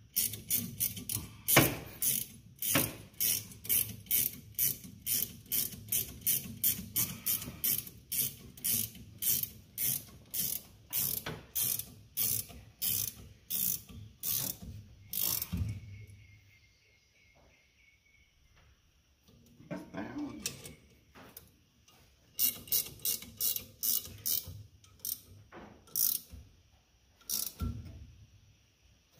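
Ratcheting wrench clicking in quick repeated strokes, about three a second, as brake line fittings on a proportioning valve are tightened. It stops for several seconds a little past halfway, then clicks again in a shorter run near the end.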